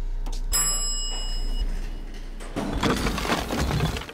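Elevator bell chiming once about half a second in, a single ringing tone that fades over about a second, over a low steady hum. A louder rushing noise takes over in the last second and a half.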